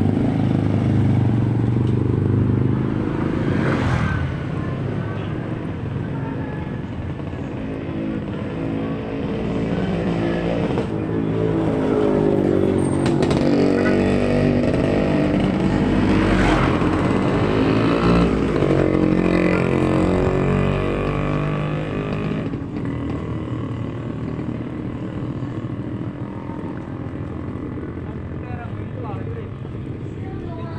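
Motorcycle and motorcycle-tricycle engines running past on the street, their pitch rising and falling as they go by; the loudest pass comes in the middle, and the engines fade toward the end.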